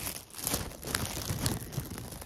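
Close, irregular rustling and crinkling as a knit beanie is handled.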